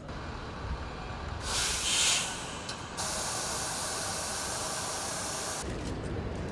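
A hiss: a short, bright burst about one and a half seconds in, then a steady, loud hiss from about three seconds that cuts off suddenly near the end.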